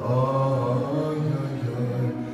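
A man's voice chanting a liturgical prayer melody in long, held notes.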